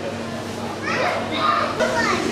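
Background chatter of children's voices, rising about a second in, over a steady low hum.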